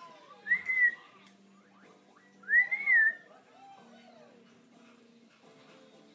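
African grey parrot whistling twice: two short whistles that rise and fall, about two seconds apart, over faint background music.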